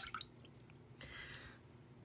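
Faint wet sounds of a clay face mask being worked with wet fingertips over a metal bowl of water, with water dripping. There are a few small clicks at the start and a soft, brief hiss about a second in.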